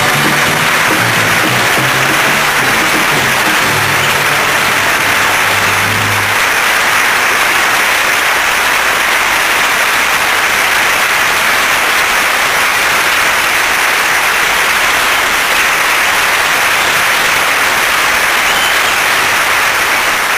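Studio audience applauding steadily and loudly, with low musical notes playing underneath for the first six seconds or so.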